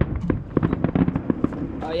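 Aerial fireworks bursting in a rapid, irregular string of pops and crackles.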